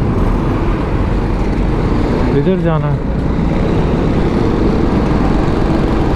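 Steady riding noise from a BMW G310GS motorcycle on the move in city traffic: wind rush on the helmet microphone over the running engine and surrounding traffic.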